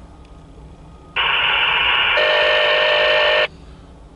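Diesel locomotive air horn sounding one steady blast of about two seconds, starting about a second in and cutting off sharply; the chord grows fuller about halfway through.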